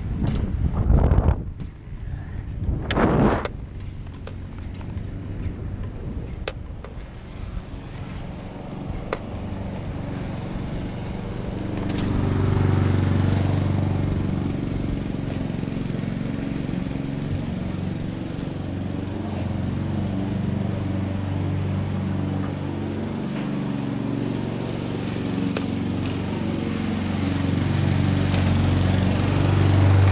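Two loud rushes of wind on the microphone in the first few seconds, then, from about twelve seconds in, a small engine running steadily with a low hum that grows a little louder near the end.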